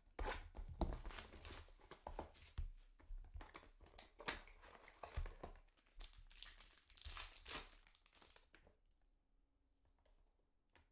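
Plastic shrink-wrap being torn and crinkled off a trading-card hobby box, a run of ripping and rustling that stops about nine seconds in.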